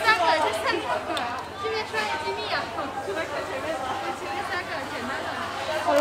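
Background chatter of several voices, with a steady low hum underneath.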